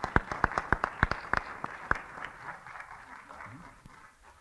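Audience applauding, with a few loud single claps close by standing out over the crowd in the first two seconds. The applause then thins out and fades toward the end.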